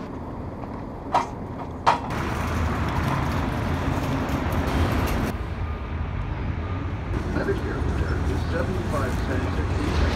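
City street traffic noise, a steady low rumble, with two sharp clicks a little under a second apart near the start.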